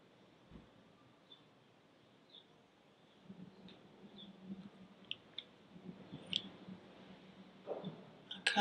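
Quiet room tone with faint, short high chirps scattered irregularly through it, and a soft low hum coming in from about three seconds in.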